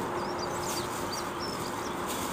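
Small birds chirping in a quick series of short calls over a steady low background hum with a faint steady tone.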